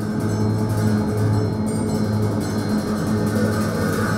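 Tibetan Buddhist monastery ritual music: a low, steady drone with repeated ringing strokes of large brass hand cymbals over it.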